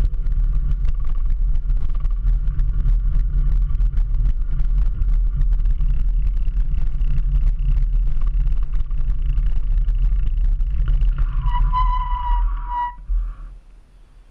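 Wind buffeting the handlebar-mounted microphone and tyre noise on wet pavement as a bicycle rolls along, a steady low rumble. Near the end a brake squeals for about two seconds as the bike stops, and the rumble dies away.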